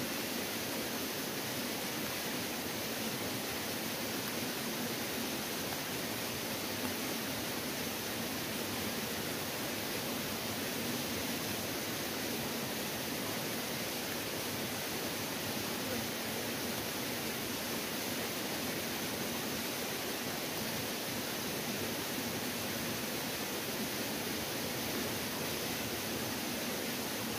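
Steady, even rushing noise that holds at one level with no breaks.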